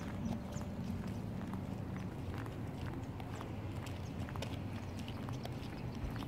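Footsteps on a paved path, each step a short sharp click, over a steady low rumble.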